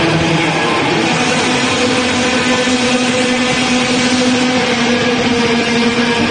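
Death metal band playing live: heavily distorted electric guitars hold long sustained notes inside a dense, loud wall of sound.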